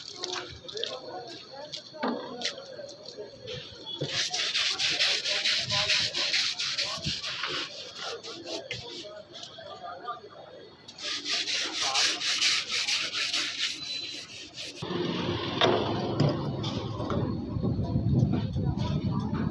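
Scrubbing on a truck radiator's finned core: two spells of quick, rasping strokes, several a second, about four seconds in and again about eleven seconds in. Near the end a louder, lower rushing noise takes over.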